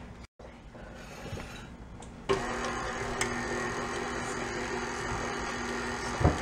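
KitchenAid Artisan tilt-head stand mixer switched on about two seconds in, at its low stir speed, its motor then running steadily as the flat beater turns through cupcake batter.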